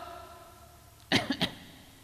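A short cough in three quick bursts, about a second in.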